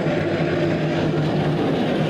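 Compact track loader's diesel engine running steadily as the machine pushes dirt with its bucket.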